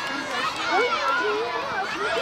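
A crowd of children shouting and calling out at once, their voices overlapping.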